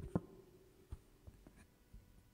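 Faint scattered clicks and light knocks in a quiet room, the strongest just after the start and another about a second in, with the last of a held sung note dying away at the very start.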